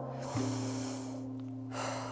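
Background music of held, steady chords that change about a third of a second in, with two hard, breathy exhalations over it, one early and one near the end: the effort breaths of a woman doing side-shifting plié squats.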